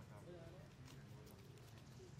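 Faint, indistinct voices over a steady low hum, with a short rising call right at the start.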